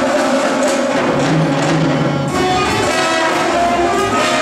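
School jazz big band playing, with trumpets, trombones and saxophones holding chords that change about halfway through.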